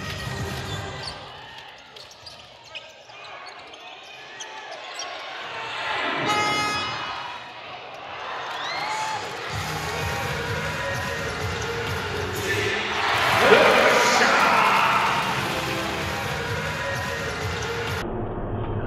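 Live basketball game sound in an arena: the ball bouncing on the court among crowd voices, rising to a loud cheer about thirteen seconds in.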